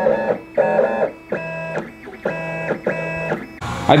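Vinyl cutter cutting decals: its drive motors whine at steady pitches in short runs of about half a second, stopping and starting several times as the blade moves from stroke to stroke.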